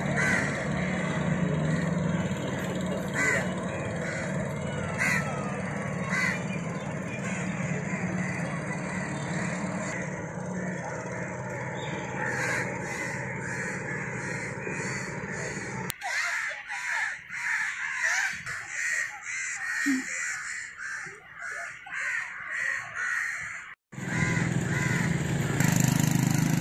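Outdoor ambience with birds calling repeatedly over steady background noise. A low rumble fills the first part and stops abruptly about two-thirds of the way through, leaving the bird calls more exposed.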